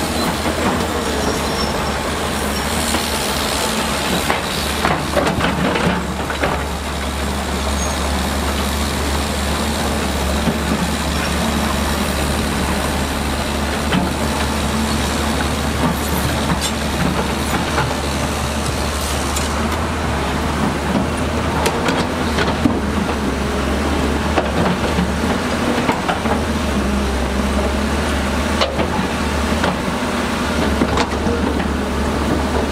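Zoomlion ZE210E hydraulic excavator's diesel engine running steadily with a low hum while it digs mud, with scattered knocks and clanks.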